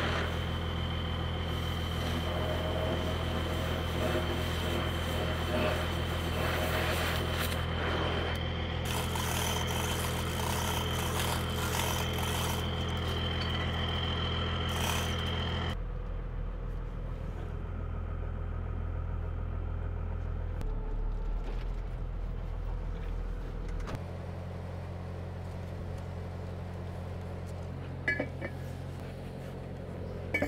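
An engine-driven welding machine's engine running steadily, a low even hum whose pitch and level shift twice. A few faint clicks sound over it.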